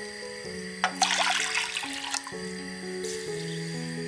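Liquid pouring and splashing into a pot, loudest from about a second in for about a second, with a fainter pour near the end, over soft background music.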